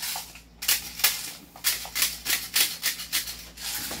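Airsoft BBs being loaded into a gas blowback pistol magazine, with its follower spring pulled back: a run of irregular small plastic clicks and rattles, a few each second.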